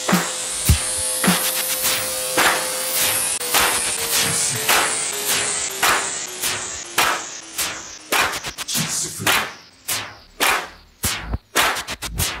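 Electronic music mixed live on a DJ controller: a noise sweep rises over the first few seconds while a tone steps down in pitch. From about eight seconds in, the track is chopped into rapid short hits with brief gaps between them.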